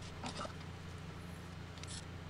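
Faint clicks and rattles of a bar clamp being set and tightened on a guitar neck, a couple of short ones about a quarter second in and one more near the end, over a steady low hum.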